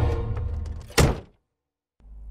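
Tense film score with sustained low chords fading away, ended by a single loud hit about a second in, after which the sound cuts off suddenly.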